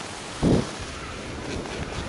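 Skiing down a groomed run: wind rushing over the camera microphone and skis sliding on packed snow, with one short, louder burst about half a second in.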